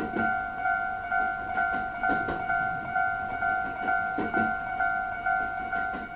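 Japanese railroad crossing warning bell ringing steadily, about two dings a second, as the crossing closes. Under it, pairs of clacks every two seconds or so from a train's wheels going over rail joints.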